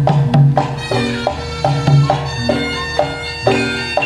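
Live Javanese gamelan music for a jaranan horse dance: regular drum strokes, with a held, shrill reed-wind melody coming in about a second in.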